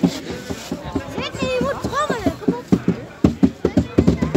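Football supporters shouting and chanting over rhythmic drum beats, the beats quickening to about four or five a second in the second half.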